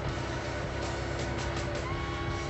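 Background rock music with electric guitar, over the low, steady sound of a vehicle engine running.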